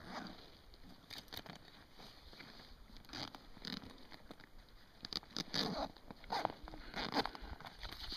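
Fabric waist pack being opened and rummaged through: scattered rustles and small knocks of gear being handled, with a few louder ones in the second half.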